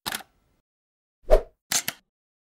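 Sound effects of an animated channel logo: a brief swish at the start, one pop about a second in, the loudest, then two quick clicks near the end.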